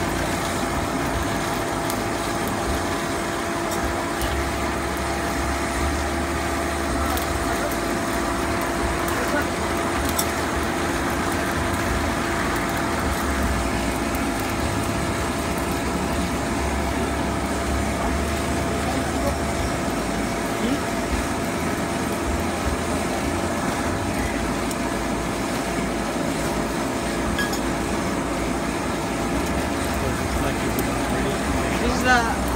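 Electric forge blower running steadily with a constant hum, forcing air into a charcoal fire that rushes under the draught.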